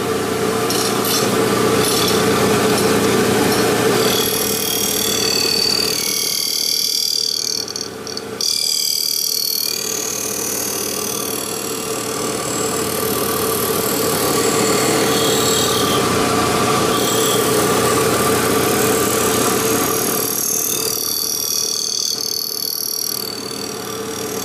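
Abrasive Machine Tool Co. 3B surface grinder running, its 3 hp spindle and 12-inch wheel giving a steady hum. Over it a high grinding noise of the wheel cutting steel swells and fades twice as the table carries the knife blank back and forth under the wheel.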